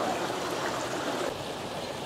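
A steady rushing noise with no distinct events, easing slightly in the second half.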